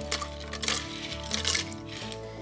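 Ice cubes poured from a cup clinking and clattering into a blender jar in a few scattered clicks, over background music.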